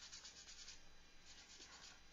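Faint sandpaper rubbing on a plastic model car body in quick, short, even strokes, with a brief pause in the middle, smoothing the edges of knife-cut marks and dents.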